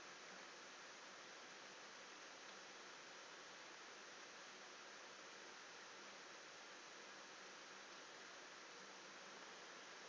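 Near silence: only a faint, steady hiss of the recording's noise floor.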